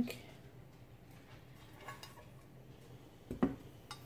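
Glass 9×13 baking dish set down on a stone countertop: one clunk about three seconds in, with a few faint clinks of handling before it.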